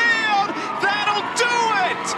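A sports commentator's voice calling the play on a softball broadcast.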